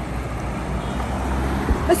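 Road traffic noise: a steady low vehicle rumble from the street, with a brief thump near the end.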